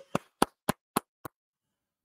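One person's hand claps, about three or four a second, growing fainter and stopping about a second and a half in.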